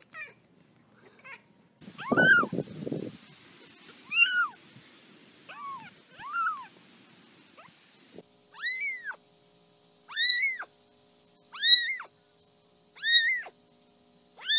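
A very young kitten mewing over and over: short, high-pitched mews that rise and fall in pitch, settling to about one every second and a half in the second half. A brief low rustling noise sits under the first mew.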